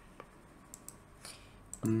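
A few faint, separate computer mouse clicks. A voice starts near the end.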